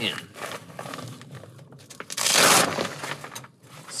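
Stiff Dyneema fabric of a backpack's roll-top crinkling and rustling as it is unrolled and opened, with one louder rasping rustle lasting about half a second midway through.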